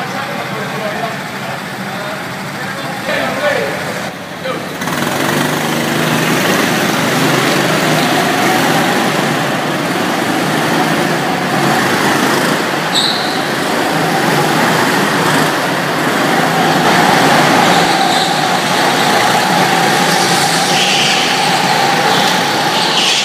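Several go-karts running together in an indoor hall. From about five seconds in, their engines set up a loud, steady drone with a whining note that rises and falls as they lap.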